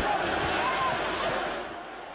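Football stadium crowd noise: a wash of cheering with faint chanting voices, dying down near the end.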